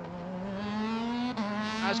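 Race car engine accelerating hard, its pitch climbing steadily, with an upshift about a second and a half in before it climbs again.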